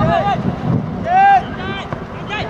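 Voices shouting, with one loud drawn-out shout about a second in, over a steady low rumble of wind on the microphone.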